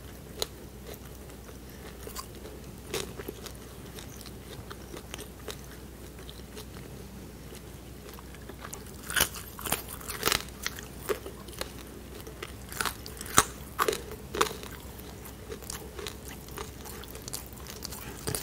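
Close-miked chewing of a pork dumpling: soft wet mouth sounds with sharp crunchy clicks, clustered thickly from about nine to fourteen seconds in.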